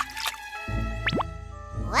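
Cartoon sound effects over light children's background music: a short pop right at the start and a quick rising, drip-like swoop a little after one second in.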